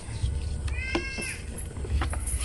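Paper rustling and crinkling as an envelope is opened by hand and a letter drawn out, with a short high-pitched call about a second in.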